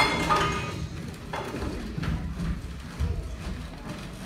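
A sharp knock at the start, then scattered dull thuds of actors' footsteps on a wooden stage floor.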